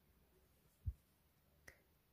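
Near silence with faint handling sounds from needlework: a soft low thump a little under a second in, then a brief faint click near the end.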